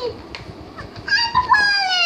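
A small child's high-pitched wordless squeal. It starts about a second in and is drawn out, sliding down in pitch. Before it come a few faint rustles as a picture-book page is turned.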